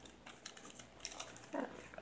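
Faint rustling and light ticks of paper pages being turned and handled in a handmade paper journal.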